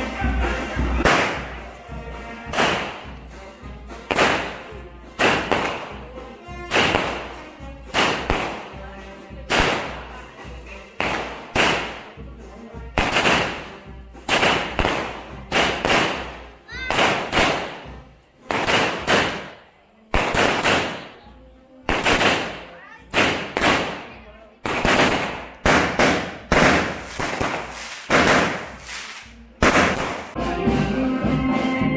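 Fireworks going off in a narrow street: a long run of loud, sharp bangs, about one a second, each ringing off the walls as it dies away.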